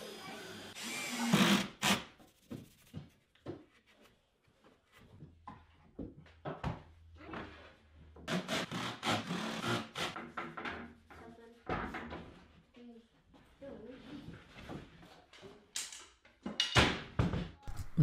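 A cordless drill briefly driving pocket screws into a pine frame near the start, then many scattered knocks and thunks of wooden boards and tools being handled on a workbench.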